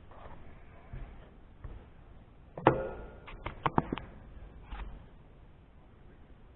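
Hand handling at a stopped metal lathe: one sharp knock about two and a half seconds in, then a quick run of small clicks and taps over the next second, and a softer tap a second later.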